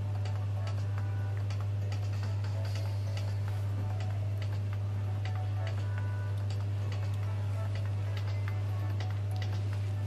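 Steady low hum, with faint irregular ticks and faint music underneath.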